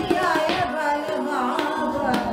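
A woman singing an ornamented, gliding Indian classical-style vocal line over a steady drone, with a couple of tabla strokes.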